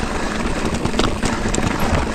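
Mountain bike riding fast downhill over a rough, rocky track: tyres crunching over stones and the bike rattling, a dense, continuous stream of small knocks and clicks.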